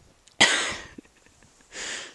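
A person coughs once, sharply and loudly, then gives a softer breathy exhale near the end.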